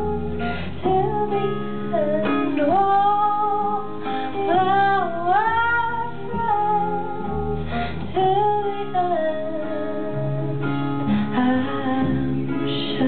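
A woman singing long, gliding notes over a strummed acoustic guitar in a live pop-folk performance.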